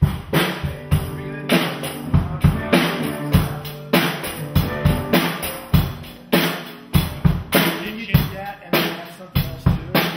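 Drum kit being played in a groove, with bass drum and snare hits and rimshots several times a second, during a studio drum check.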